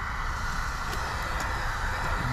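Steady outdoor background hiss over a low rumble, with a few faint ticks and no distinct event.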